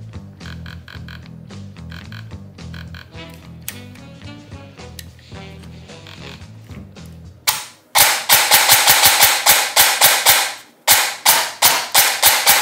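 Bare airsoft electric gearbox of an ASG CZ Scorpion EVO3, on its first test after the rebuild, firing one single shot and then cycling rapidly on full auto in two runs with a brief pause between them; the loud, fast clicks are the piston, gears and motor working with no outer body around them. It seems to cycle without the nozzle moving.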